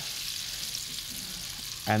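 Shredded spring roll wrapper strips deep-frying in hot oil in a wok, a steady sizzle.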